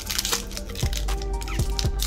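Background music with sustained notes, over the faint crinkle of a foil booster-pack wrapper being handled and torn.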